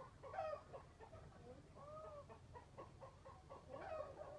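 Chickens clucking faintly in a pen, a run of short clucks about three or four a second, with a louder call about half a second in.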